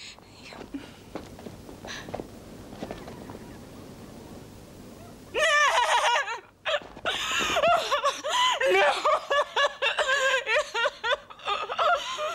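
A person crying out and sobbing loudly in high, wavering, broken wails, with gasping catches, starting about five seconds in after a stretch of low rustling noise.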